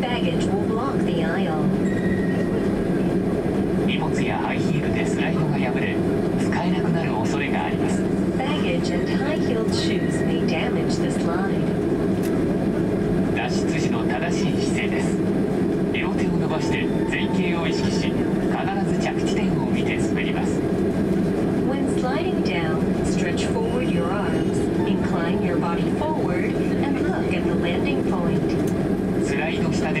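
Steady cabin drone of a Boeing 767-300 taxiing, its engines at low thrust, heard inside the cabin from a window seat over the wing, with a voice talking over it.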